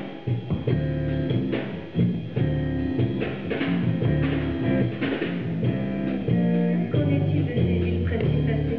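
A live band playing an instrumental passage: bass guitar holding long low notes under electric guitar, with drum kit and cymbals.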